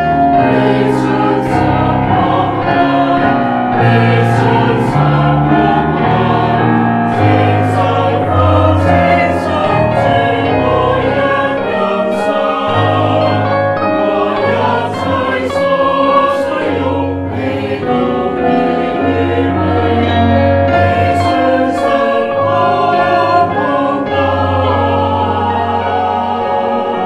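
A small mixed choir of men's and women's voices singing in harmony, sustained notes moving in several parts without a break.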